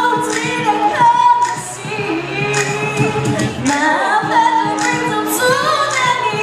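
Women singing a pop song live into microphones over loud music, the voices gliding between held notes.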